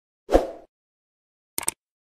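End-screen sound effects. A short, sudden pop about a third of a second in fades quickly. A quick double mouse click about a second and a half in comes from the subscribe-button animation.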